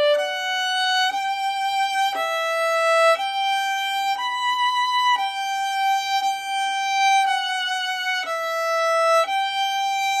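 Solo violin bowing a slow passage of sustained single notes, changing pitch about once a second, with one note held for about two seconds in the middle.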